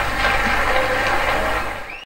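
Concert audience applauding, an even noisy clatter that fades out near the end.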